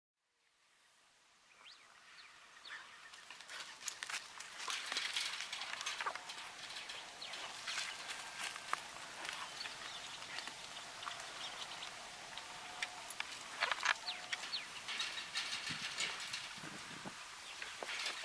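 A pack of coyotes yipping and howling, faint and irregular: a chorus of short high yips and wavering calls that swells in after a second or so of silence and comes and goes in waves.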